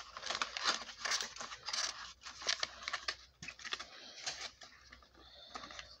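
Rustling and crinkling of a cardboard gift box being handled and opened, in dense scratchy strokes that thin out after about four seconds.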